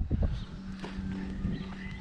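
A few footsteps on dry gravel, with a steady low hum underneath.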